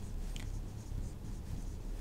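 Marker pen writing on a whiteboard: faint, short strokes of the felt tip as letters are written.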